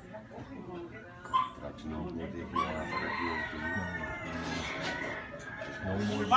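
A rooster crowing: one long, drawn-out crow that starts a little before midway and lasts about three seconds, with faint voices underneath.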